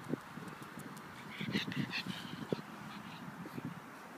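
A pug breathing and sniffing close to the phone, with a few short high chirps in the middle.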